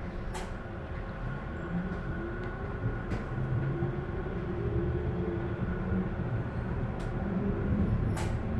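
Interior running noise of a Frankfurt U5-50 light-rail car under way: a steady rumble of wheels on rail with a few short clicks and rattles. A whine rises in pitch through the middle, and the noise slowly grows louder.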